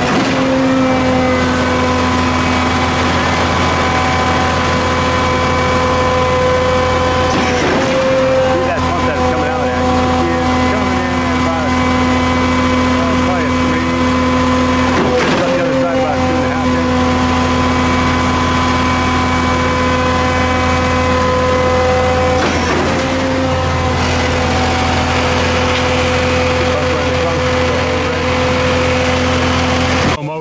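Concrete line pump running at the hopper while a ready-mix truck discharges concrete into it, its engine holding a loud, steady note. About every seven and a half seconds there is a brief knock as the note dips.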